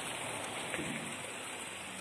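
Steady, even rush of a shallow, muddy seasonal stream running over rocks, flowing after the first autumn rains.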